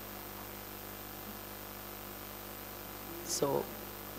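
A steady electrical hum with a faint hiss under a pause in the talk; a woman says a single short word near the end.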